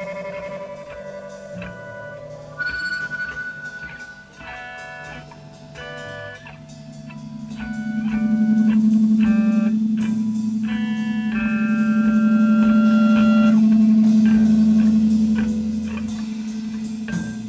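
Electric guitars improvising through effects: a wandering line of single picked notes, with a sustained low note that swells in about halfway through and holds as the loudest part until near the end.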